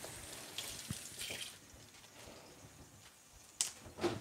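Water from a kitchen tap running briefly as cabbage leaves are rinsed, fading after a second or two, then a sharp click near the end.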